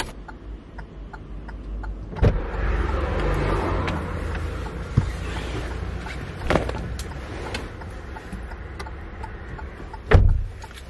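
Sounds inside a car: a steady low rumble, a sharp click about two seconds in followed by a few seconds of rushing noise, and a few more knocks and clicks as things are handled near the microphone.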